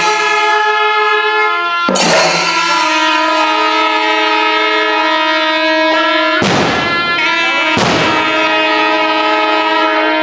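Kombu, Kerala's curved brass natural horns, blowing long held notes in a loud blare, with a few heavy chenda drum strokes about 2, 6.5 and 8 seconds in.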